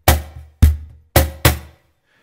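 Wooden cajon played with the hands: four sharp strokes of a samba-reggae phrase, the last two close together as loud slaps, then the playing stops.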